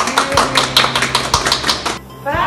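Hands clapping quickly and evenly, about eight claps a second, over background music with a steady low note and an occasional beat.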